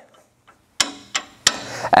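Three sharp clicks, about a third of a second apart, starting almost a second in, from a John Deere 50 series drill's firming wheel arm being worked by hand on its new pin and poly bushings to check that it pivots freely.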